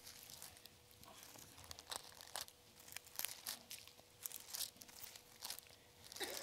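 A paper Bible's pages being turned and leafed through by hand: a run of faint, short rustles and flicks of thin paper.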